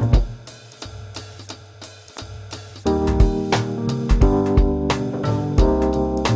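Background music with a drum-kit beat. For about the first three seconds only the drums and bass play, then the melody instruments come back in.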